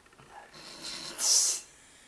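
A hard, hissing breath through the nose of a man holding a mouthful of cinnamon with his lips shut. It builds from about half a second in, with a short loud snort-like burst near the middle.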